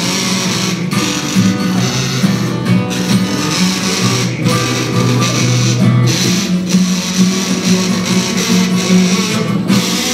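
Strummed acoustic guitar with a neck-rack harmonica playing over it: an instrumental break in a folk-blues song.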